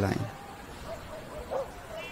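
Two faint, short animal whines, about a second apart, the second rising and then falling. They follow the end of a spoken word.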